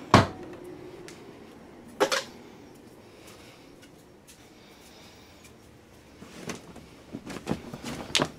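Knocks and clatter in a small room: a sharp knock just after the start, another about two seconds in, then a run of lighter knocks near the end.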